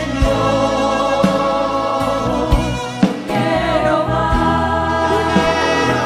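A choir singing a hymn with instrumental accompaniment and a steady bass line underneath.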